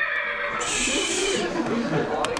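A recorded horse whinny from the horse.ogg sound file, played back by a web page's HTML5 audio element on autoplay. It is a wavering call, harshest in the middle.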